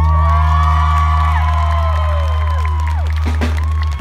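Live rock band's closing chord ringing out: a deep, loud held bass note with higher notes sliding and bending above it, mixed with crowd cheering. The held note cuts off abruptly just before the end.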